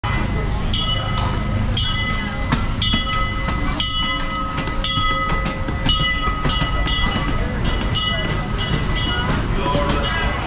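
Disneyland Railroad steam train rolling into the station: a steady low rumble from the passing locomotive and cars, with a bell ringing about once a second over it and a faint steady high squeal.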